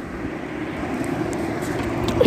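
Steady background noise: a low hum with a hiss above it, slowly growing a little louder.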